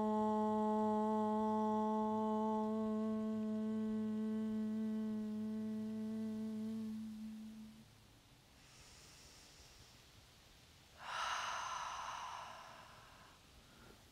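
A woman chanting one long "Om", held on a single steady note and fading out about eight seconds in. A few seconds later comes a soft, breathy rush of air lasting a couple of seconds.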